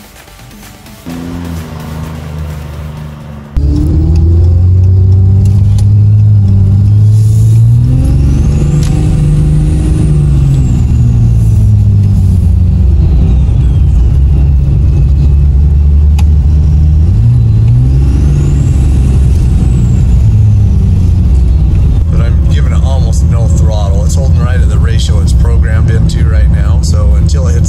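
6.7L Cummins diesel pulling under acceleration, heard from inside the cab, starting abruptly a few seconds in. The engine note rises and falls twice, each time with a high turbo whistle from its VGT-over-S480 compound turbos that climbs as they spool and then fades away.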